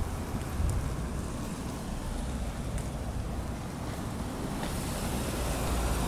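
Wind rumbling and buffeting on a handheld microphone outdoors, with a steady hiss of street noise that grows brighter near the end.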